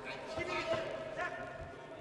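Boxing match in an arena: voices carry over a few short, dull thuds from the ring.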